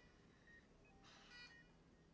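Faint electronic beeping of hospital bedside equipment: a short multi-tone beep about every second and a half, with softer single beeps between.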